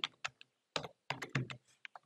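Computer keyboard being typed on: about six separate keystrokes in two seconds, irregularly spaced.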